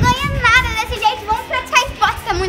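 A young girl talking fast and animatedly, her voice rising and falling in pitch, over background music.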